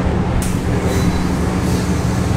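Steady low hum of laundry pressing equipment (vacuum ironing table and steam iron) running, with a brief hiss about half a second in.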